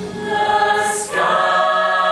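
Mixed choir of student singers holding sustained chords in harmony; about a second in the sound dips briefly with a hissing consonant, then a new held chord comes in.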